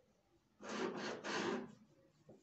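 Pen drawing a curved line on pattern paper along a curved pattern-master ruler: two strokes of about half a second each, starting just over half a second in.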